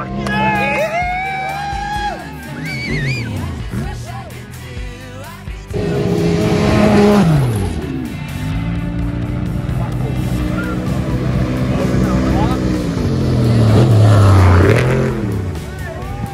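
Off-road race vehicles go past at speed in two loud passes, one about six to seven seconds in and one near the end. Each engine note drops in pitch as the vehicle goes by.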